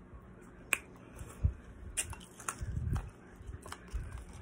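Ice being chewed after a spoonful from a metal spoon: a handful of sharp, irregularly spaced clicks and crunches, with soft low thumps between.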